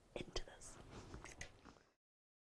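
Faint whispered voices with a few small sharp clicks, cutting off suddenly to dead silence just before the end.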